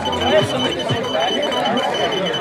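Race chip-timing system beeping in a rapid series of short, high, even beeps as a runner's timing chip is read crossing the finish-line mats.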